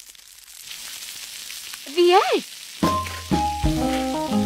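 Egg frying in a pan: a steady sizzle that slowly gets louder. About two seconds in comes a short voiced sound that rises and falls in pitch, and near the end music with held notes begins.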